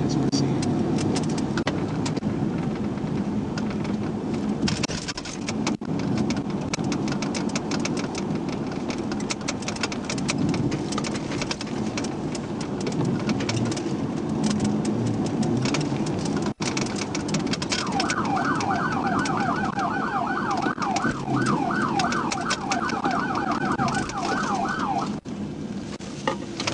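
Steady road and wind rumble with crackling on a police cruiser's dashcam microphone during a low-speed pursuit. About two-thirds of the way in, an electronic siren starts a fast, rapidly repeating yelp that runs for about seven seconds, then stops.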